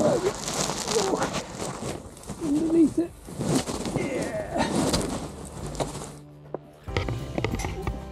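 Rustling and crunching of dry leaf litter and clothing, with short grunting voice sounds, as a person stoops and squeezes under a fallen tree trunk. It breaks off about six seconds in and music with plucked notes starts about a second later.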